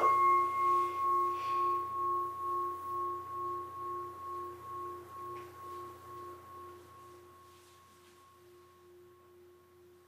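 Consecration bell struck once as the host is elevated. Its clear tone rings on with a slow, even wavering and fades away over about eight seconds.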